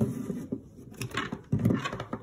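Plastic toy figures being handled and knocked about close to the microphone: scattered light knocks and rubbing, with a cluster of duller thuds near the end.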